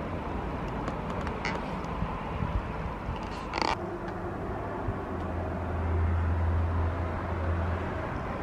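A domestic cat purring close to the microphone, a steady low rumble that grows stronger about five seconds in, with a brief rustle near the middle.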